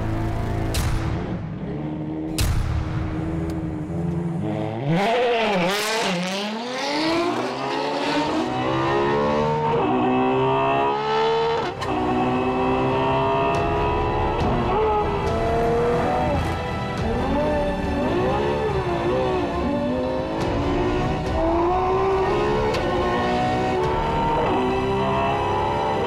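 Ferrari FXX-K's V12 hybrid powertrain at full throttle in Qualify mode, with all its petrol and electric power deployed at once. The engine note climbs and drops repeatedly as it works up and down the gears, with a deep dip and climb in pitch about five seconds in.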